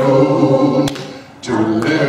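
A group of voices singing unaccompanied, led by a man singing into a microphone; the singing drops away for a moment just after a second in, then comes back in.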